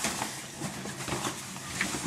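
Faint rustling and small handling noises over a low steady hum, with a few soft brief knocks.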